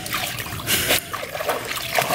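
Dogs wading and splashing in shallow lake water, with the water sloshing and trickling and a louder splash just before the one-second mark.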